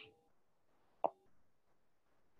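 A quiet pause broken by one short, soft click about a second in.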